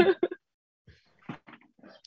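A woman's short laugh, then a few faint, brief sounds as she gets up from her desk chair and moves away.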